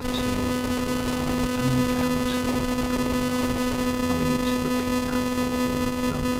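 Loud, steady electrical hum or buzz on one pitch with a stack of overtones, switching on abruptly, with faint speech underneath.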